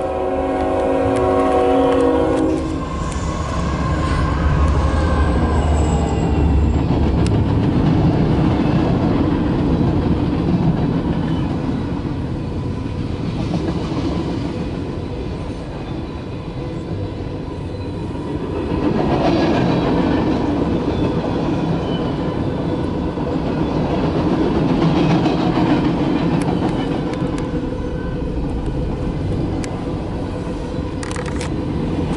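CSX mixed freight train: the locomotive's horn sounds a steady chord that cuts off about three seconds in, then the train rolls past with a continuous rumble and clatter of wheels on rail, heard from inside a car at the crossing.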